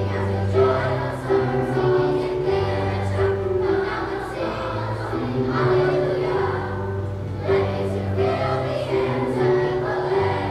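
Fifth-grade children's choir singing a song, with low sustained notes accompanying the voices.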